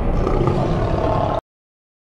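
Lion roar sound effect at the tail of a logo sting, cutting off abruptly about a second and a half in.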